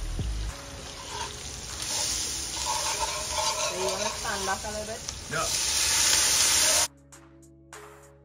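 Hot oil sizzling in a metal pot on a gas burner. The hiss swells loud for the last second and a half as water is poured in from a cup. It cuts off suddenly about seven seconds in, giving way to background music.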